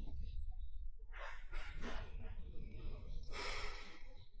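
A woman's breathy sighs, two of them, one about a second in and a shorter one near the end, over a steady low background rumble.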